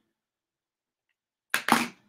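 Dead silence from a noise-gated microphone for about a second and a half, then a short, sudden vocal sound from a man near the end.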